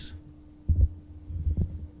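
Two low thuds about a second apart from a handheld microphone being handled and passed on, over a steady faint hum.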